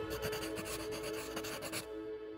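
Scratching of a pen writing on paper over soft ambient music with sustained notes; the scratching stops near the end.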